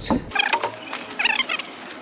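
A backpack being unzipped and rummaged through by hand: two short spells of rasping and rustling, about a second apart, with a few small squeaks.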